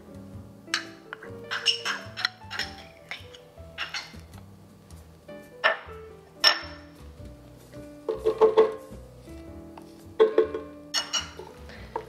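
Background music with a steady run of notes, over a series of sharp clinks and scrapes of a spoon against the tomato paste can and the rim of a stainless steel pot as the paste is scooped in; the clinks bunch together near the end.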